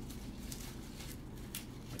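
Rose leaves being stripped by hand off a rose stem: faint rustling with a few light snaps and crackles.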